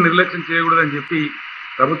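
Speech only: a man talking in short phrases, with a pause just past the middle and a steady hiss behind his voice.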